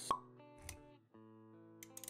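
Sound effects and music of an animated video intro: a sharp pop just after the start, a softer knock about half a second later, then a quiet synthesized chord with a low bass note held from about a second in.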